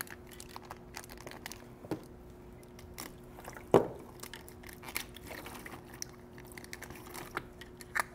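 Scattered small clicks and crinkles of packaging and objects being handled, with one sharp knock a little before the middle. A faint steady hum runs underneath.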